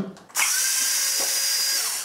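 Small cordless drill-driver running at a steady whine for about a second and a half, spinning a wheel nut off an RC truck's hub. It starts a moment in and stops just before the end.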